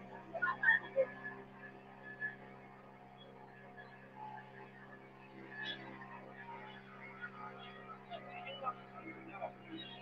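Boat engine running at a steady speed, a constant drone with faint voices talking in the background.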